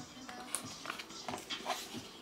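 A few soft knocks and rustles of a cardboard perfume box being picked up and handled, over a faint steady hum.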